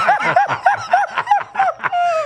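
Several men laughing together, one in a steady run of short 'ha' bursts about three a second.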